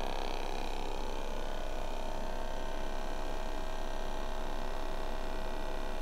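ATMAN ATOM-2 battery-powered aquarium air pump running at a steady hum, pushing air through an airstone in a tub of water. The pump is loud.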